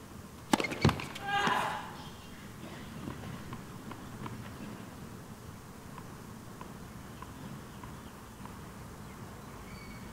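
Two sharp tennis-ball strikes about a third of a second apart, then a short loud shout. Faint light ticks follow.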